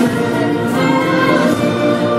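Choral music with orchestra: many voices and instruments holding long sustained notes.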